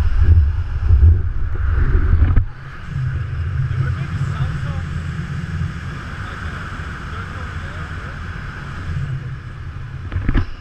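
Wind buffeting the camera's microphone during a tandem parachute descent under an open canopy: a heavy, rumbling rush for the first two seconds or so, then easing to a steadier, lower rush.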